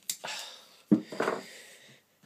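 Masking tape being peeled off the roll and wrapped round a cue shaft: two short peeling sounds about a second apart.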